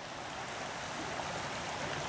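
Creek water flowing strongly, a steady rushing sound that grows a little louder; the creek is running high with meltwater from a recent snowstorm.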